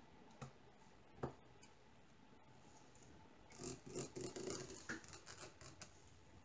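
Small plastic clicks from diamond painting: a couple of single clicks, then about two seconds of quick, irregular light clicking and rattling as the drill pen and a small plastic tray of resin drills are handled.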